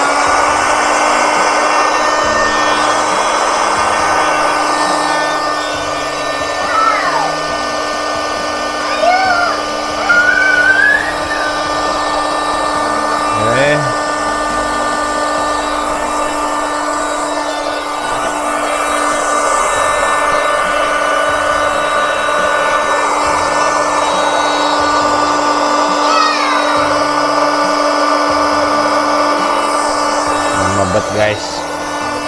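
Small handheld electric air pump running steadily, blowing air into an inflatable vinyl pool slide through its valve. A few brief squeaks rise over it in the middle.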